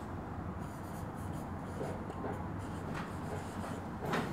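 Marker pen writing on a whiteboard: a run of faint scratching strokes as a line of text is written out.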